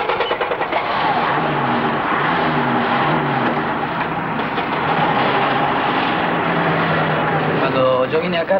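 Steady running noise of a moving vehicle heard from inside its cab while being driven.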